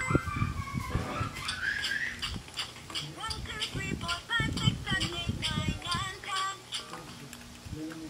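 LeapFrog Shakin' Colors Maracas toy playing its electronic party tune of short, sliding notes while being shaken, its beads rattling throughout. The playback is weak and off because its batteries are running low.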